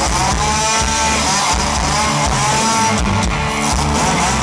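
Chainsaw engine revved into a vocal microphone as a solo in a rock song, its pitch swelling and falling in repeated arcs, with the band's drums and guitars playing under it.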